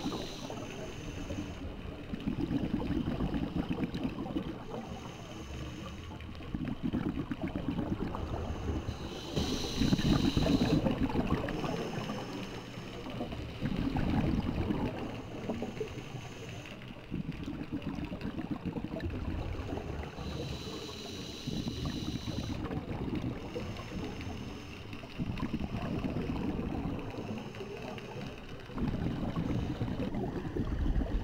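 Scuba diver breathing through a regulator underwater. Each breath comes every two to three seconds, with a rush of bubbling on the exhale.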